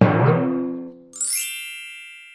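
Added editing sound effects: a low struck, ringing hit that fades over about a second, then a bright sparkling chime that rings out and fades.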